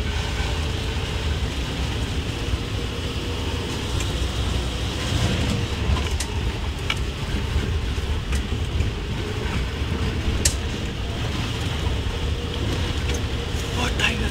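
Open-top safari jeep driving along a dirt track: a steady engine and road rumble with occasional sharp clicks and rattles from the vehicle.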